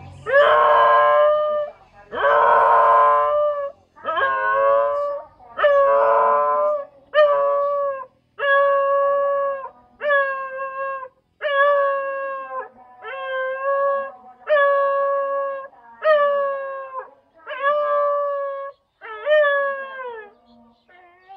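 Dog howling, a run of about a dozen howls, each about a second long with short breaks between. The first few are louder and rougher, the later ones clean and steady in pitch, each dropping at the end.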